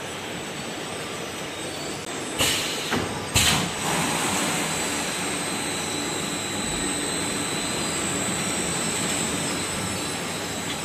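Automatic bucket filling and packing line machinery running steadily, with a faint high steady whine. Two short, loud bursts of noise cut in about two and a half and three and a half seconds in.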